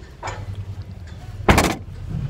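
A car's rear hatch pulled down and slammed shut: one loud thud about one and a half seconds in.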